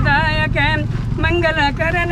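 A high-pitched, wavering melodic voice or instrument holding notes with a strong vibrato, over a steady low rumble.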